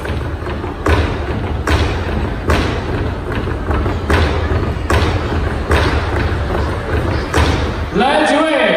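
Drum struck at a steady beat for a dance, about five strokes every four seconds, each stroke with a deep bass boom.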